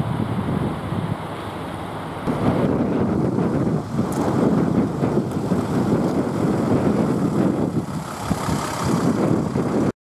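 Engines of stopped vehicles running at idle, a steady low noise that grows louder about two seconds in and then cuts off suddenly near the end.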